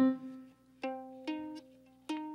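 Ukulele strings plucked one at a time while being tuned up: a note at the start, another a little under a second in and a third about a second later, each ringing and fading away.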